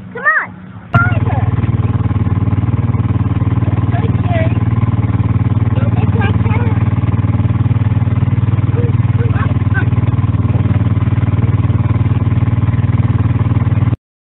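Small engine of an antique-style ride car running steadily at an even pace, heard close from aboard the car, with faint voices over it. It begins abruptly about a second in, after a child's voice.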